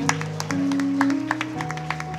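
Electric keyboard playing slow, held chords, changing about half a second in and again past the middle, under scattered handclaps from a congregation clapping in praise.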